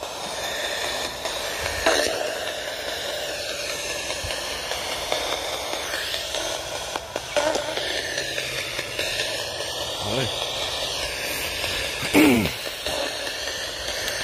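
An IDC Direct Linc FX spirit box sweeping through radio stations through its small speaker: a steady static hiss broken by brief garbled voice-like snippets, the loudest a falling fragment near the end. One snippet is taken by the user for a spirit saying 'thank you?'.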